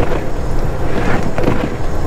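Steady drone of a semi truck's diesel engine heard from inside the cab while driving, with tyre noise from the wet road.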